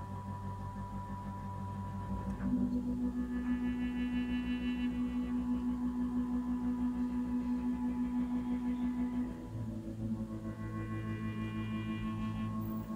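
Sequential Prophet Rev2 16-voice synthesizer holding sustained pad chords with a steady pulsing wobble, moving to a new chord about two and a half seconds in and again after about nine and a half seconds.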